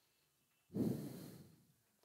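A man's single audible breath close to the microphone, starting suddenly about two-thirds of a second in and fading out within about a second.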